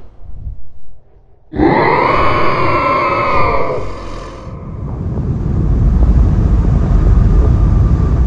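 Sound effects from an animated space scene. About a second and a half in, a loud creature-like roar starts suddenly, its pitch sliding downward. It fades into a deep low rumble that swells and keeps going as the Earth turns to molten fire.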